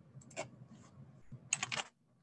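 Typing on a computer keyboard, entering a dimension value: a couple of clicks shortly in, then a quick run of about four keystrokes a second and a half in.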